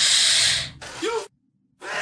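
A woman sucks in a sharp, hissing breath through clenched teeth, a cringing gasp lasting about half a second. A short voiced sound follows, then a moment of silence.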